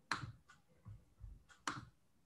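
A few faint, short clicks or taps, the sharpest just after the start and another about a second and a half later, with softer ticks between.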